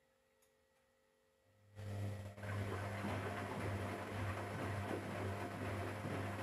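Electrolux EWF10741 front-loading washing machine starting up about a second and a half in: a steady low hum with a loud, even rushing noise over it, running on.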